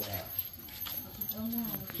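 A person's voice, faint and brief, in a lull between louder talk.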